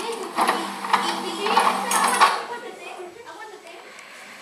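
Young performers' voices, loud for about the first two seconds, then quieter.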